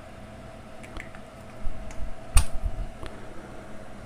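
Small clicks and rubbing as the rubber spark plug cap of a Honda Wave's engine is handled and pushed back onto the spark plug, with one sharp click about halfway through as it seats. A faint steady hum runs underneath.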